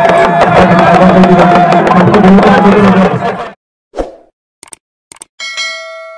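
Loud, dense drumming with voices over it, cutting off abruptly about three and a half seconds in. Then an end-screen sound effect: a soft pop, two quick clicks and a bell-like ding that rings and fades.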